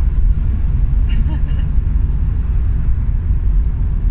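Steady low road and engine rumble heard inside the cabin of a moving camper van.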